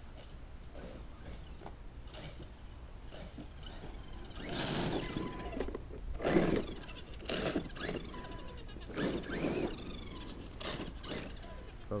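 Redcat Landslide RC monster truck's electric drivetrain given short stabs of throttle: several bursts of motor whine and grinding gear noise from about four seconds in, the loudest around the middle. The gears are stripped, which the driver takes for a stripped center spur gear or diff.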